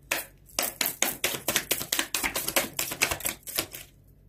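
A tarot deck being shuffled by hand: a fast run of crisp card-on-card slaps, about six a second, that stops shortly before the end.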